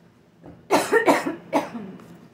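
A woman coughing three times in quick succession, starting just under a second in.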